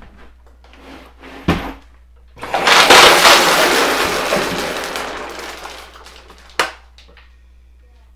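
A blue plastic storage tote being handled: a knock, then a loud clattering rush that fades away over about three seconds, then one sharp click.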